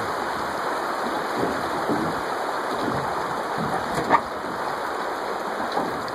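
Fast river current rushing and splashing around a drifting boat, a steady churning water noise, with one brief knock about four seconds in.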